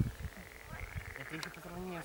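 Frogs croaking in a rapid rattling trill that starts a little under a second in.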